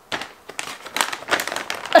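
Plastic snack bag of Snickers Peanut Brownie Squares crinkling as it is picked up and handled, a dense run of irregular crackles, with a short laugh at the very end.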